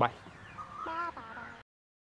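A chicken clucking a few short calls about a second in, just after the last clipped word of speech; the sound then cuts off abruptly.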